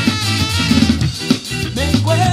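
Instrumental passage of a ska song: the full band plays with the drum kit to the fore, snare and bass drum hits driving the beat, and no singing.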